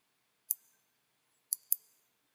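Three sharp computer mouse clicks: one single click, then a quick double about a second later.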